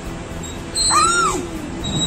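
A child's single high-pitched squeal, rising and then falling in pitch, about a second in.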